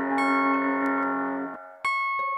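Instrumental song intro: a sustained, bell-like keyboard chord that stops about a second and a half in, followed near the end by a new bell-like note struck sharply.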